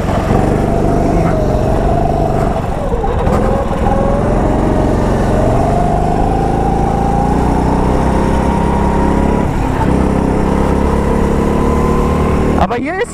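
Go-kart engine running hard. Its pitch dips briefly about three to four seconds in, then climbs steadily as the kart accelerates.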